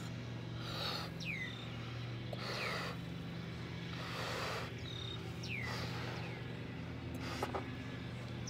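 Breaths being blown into a rubber balloon to inflate it, a short puff of air every second or so. Several short falling whistles, like bird chirps, sound over a steady low hum.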